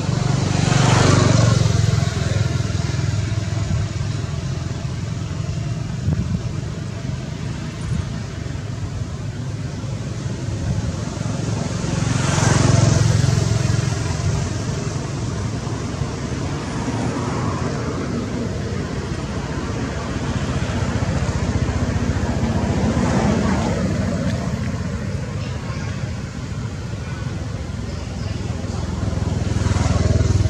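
Road traffic going by: several motor vehicles pass one after another, each rising and fading over a few seconds, over a steady low rumble.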